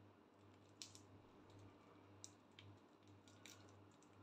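Near silence: a faint low room hum with a few soft, scattered clicks.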